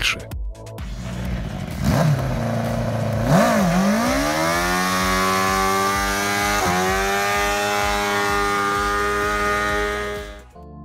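Motorcycle-engined TerraCraft three-wheeled trike doing a burnout. The engine revs up sharply about three and a half seconds in and holds steady at high revs while the rear tyre spins against the road.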